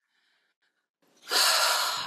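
A loud, sharp intake of breath close to the microphone, starting just over a second in and lasting under a second, taken just before speaking.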